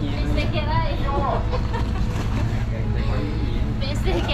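A riverboat's engine running with a steady low rumble as the boat pulls away from the pier, with voices over it.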